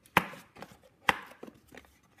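Two sharp knocks about a second apart as a white cardboard gift box is handled and turned over in the hands, with a few fainter clicks of card between them.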